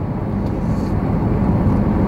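Car being driven, heard from inside the cabin: a steady low rumble of road and engine noise with a faint hum, growing a little louder.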